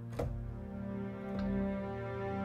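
Cakewalk SI String Section virtual instrument playing sustained string chords on a slow pad sound. A new chord comes in a little past halfway, and there is a soft click near the start.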